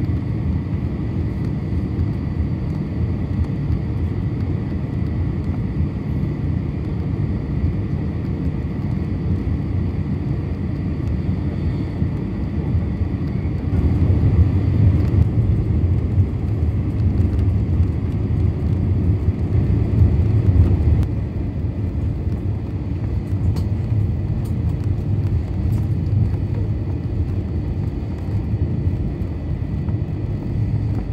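Cabin noise of an Airbus A321-232 taxiing: a steady low rumble from its IAE V2500 engines at taxi thrust and the rolling airframe, with a faint steady high whine. The rumble swells for several seconds in the middle, then settles back.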